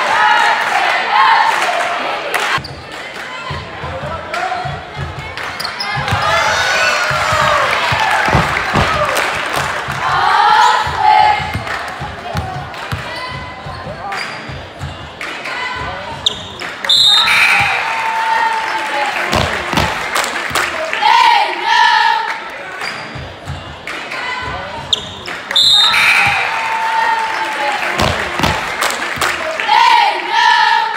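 A basketball bouncing repeatedly on a hardwood court, under steady crowd voices and shouts.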